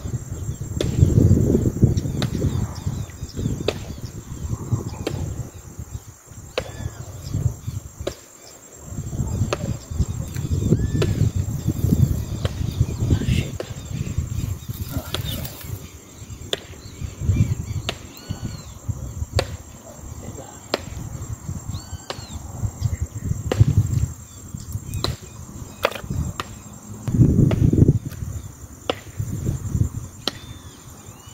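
Wind gusting on the microphone in swells of low rumble, over a steady high insect buzz, with scattered sharp clicks and short chirps.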